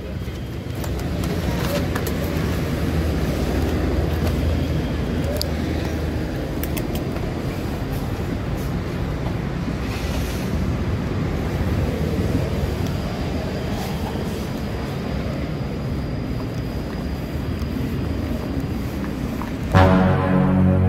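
Motorcycle engine running steadily at low speed, with surrounding traffic noise.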